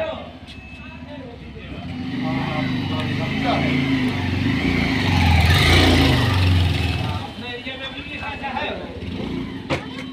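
A motor vehicle's engine passing close by. It builds from about two seconds in, is loudest around the middle, and fades away by about seven seconds in.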